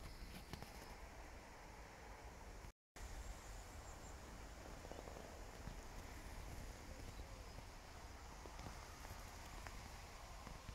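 Near silence: faint, even background noise, broken by a moment of total silence about three seconds in.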